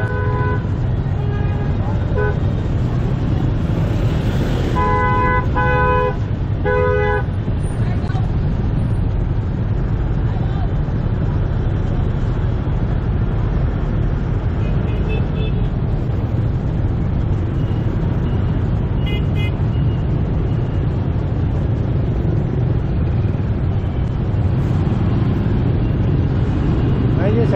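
Motorbike traffic stopped in a dense crowd: a steady low rumble of idling engines, with horns beeping. There are a few short beeps at the start, three loud honks about five to seven seconds in, and fainter beeps later on.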